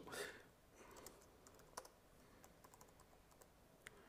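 Faint, irregular keystrokes on a computer keyboard as terminal commands are typed.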